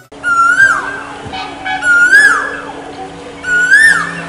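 Male Asian koel calling: a clear whistled note that swoops upward and drops back, repeated three times about a second and a half apart.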